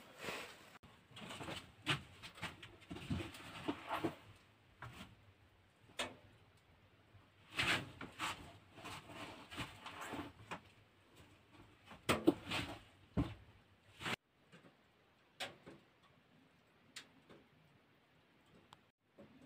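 Scattered knocks, clicks and rustles of a person coming in through a wooden door and moving about inside a small log hut. The sounds die away near the end.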